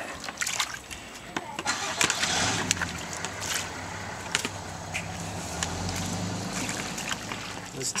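Water sloshing and splashing as a green plastic gold pan is swirled and dipped in a tub of muddy water, washing off the lighter material. Under it, from about two seconds in, a steady low engine-like hum that fades out near the end.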